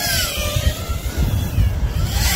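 FPV racing quadcopter's four DYS Sun-Fun 2306-1750kV brushless motors on a 6S battery, whining with the pitch gliding up and down as the throttle changes, over a low rumble.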